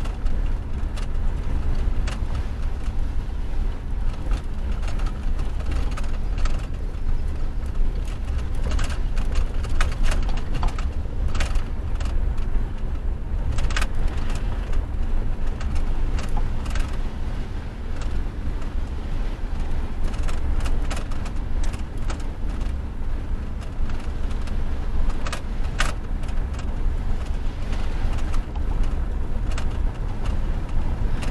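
Inside a truck's cab while it drives a dirt road: a steady low rumble of engine and tyres, broken by occasional sharp knocks and rattles as the cab goes over bumps.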